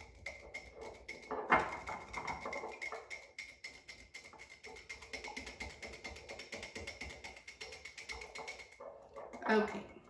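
Wire whisk beating an olive oil and lemon juice dressing in a small glass jar: a fast, steady run of light clinks as the tines strike the glass and stir the liquid.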